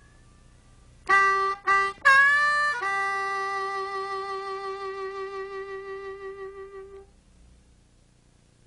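Harmonica playing a short blues lick: two short notes, a bent note, then one long held note with a pulsing vibrato.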